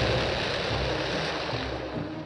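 Explosion sound effect: a long rushing blast noise that dies away near the end, over background music with low sustained notes.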